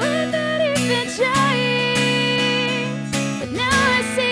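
Young woman singing over her own strummed acoustic guitar, live. She holds sung notes with a slight waver, and the guitar strums keep a steady rhythm under the voice.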